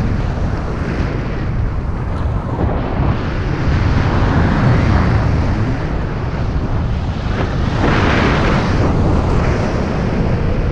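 Airflow buffeting a handheld camera's microphone during a tandem paraglider flight: a loud, steady rushing, heaviest in the low end, that swells about four to five seconds in and again around eight seconds.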